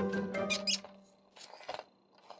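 Background music with a held chord that fades within the first second, over clicks and squeaks of the Cang Toys Landbull figure's plastic parts being handled, with a few sharper clicks near the end.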